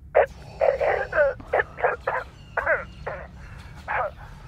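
A man choking and gagging with something caught in his throat: a string of short, strangled, rasping bursts of voice, some sliding in pitch.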